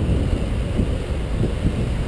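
Steady low rumble of wind buffeting the microphone outdoors, with no distinct clicks or knocks.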